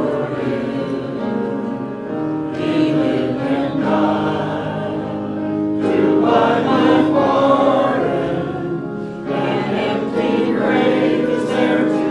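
A choir singing a hymn, with held notes that change every second or two.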